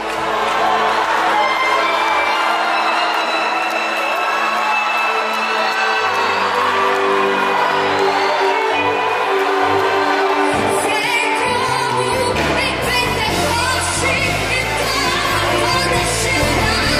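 Live gospel worship music with singing, played by a band. The bass drops out about two seconds in and comes back around six seconds. From about ten seconds in the band grows fuller and brighter.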